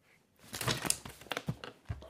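Rustling and several light knocks from handling a mobile phone as it is picked up off the desk. The sounds are irregular and start about half a second in.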